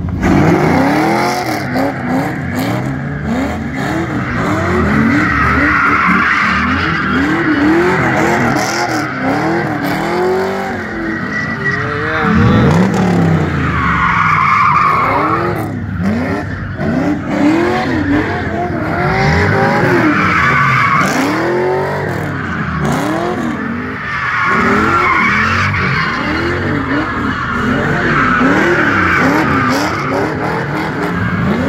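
A car's engine revving up and down over and over while its tyres squeal and spin on asphalt as it does donuts. The squeal and engine run on throughout, with no let-up.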